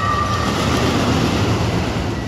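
Pendulum thrill ride's machinery running as the gondola swings: a rumbling mechanical rush that swells through the middle, with a steady high whine that fades about halfway.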